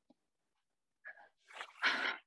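Dead silence for about a second, then a woman's short, sharp in-breath through the mouth near the end, taken just before she speaks.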